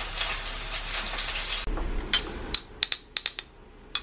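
Frying sizzle for about the first second and a half, then a metal spoon clinking against a glass jar half a dozen times in quick, sharp, ringing taps while scooping out minced garlic.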